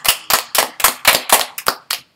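A few people clapping their hands together: quick, sharp claps, about six a second, that stop just before the end.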